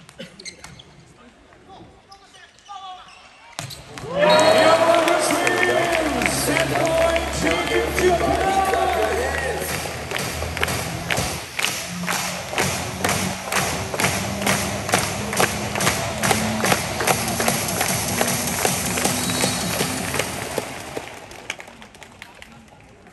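Arena PA music starts suddenly a few seconds in, loud and bass-heavy, over a crowd of spectators; from about halfway it carries a steady beat of sharp hits, about two to three a second, before fading near the end.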